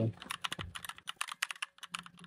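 A quick run of light clicks and crackles from a paper plate with a paper-wrapped torta being handled and set down on a wooden table.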